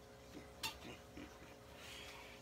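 Plastic action figures being handled on a wooden tabletop: one sharp click a little over half a second in, with a few faint taps around it.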